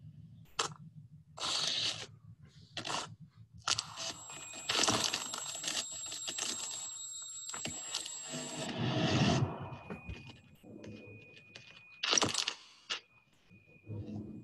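Soundtrack of a short animated promo video: a series of brief swishes and crunching, scraping effects, with a longer noisy stretch and a steady high tone through the middle and a sharp swish near the end.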